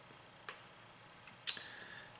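Small handling clicks as pepperoni slices are laid by hand on a pizza on a metal baking sheet: a faint click about half a second in, then a sharper one about a second later.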